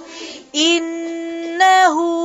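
A woman reciting the Quran in melodic tajweed style, holding one long drawn-out syllable on a steady pitch from about half a second in, with a brief dip in pitch near the end.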